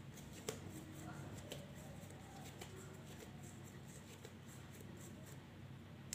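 Faint sounds of hands pressing and pinching a soft ball of semolina-dusted dough closed, over a low steady hum, with a sharp click about half a second in.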